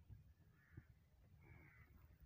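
Near silence, with two faint, distant bird calls, about half a second and a second and a half in.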